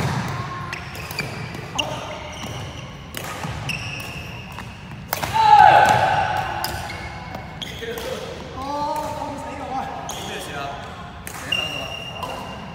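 Badminton rally: rackets cracking against the shuttlecock back and forth about once a second, with sneakers squeaking on the wooden court floor. Players' voices call out, loudest in a falling shout about five seconds in.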